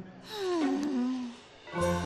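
A person's voice giving one long, falling groan. A steady pitched sound, likely background music, comes in near the end.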